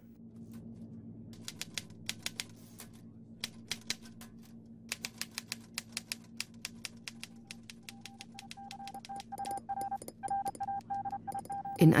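Manual typewriter being typed on in quick, irregular runs of keystrokes, over a low steady hum. In the second half a steady beeping tone comes in and out.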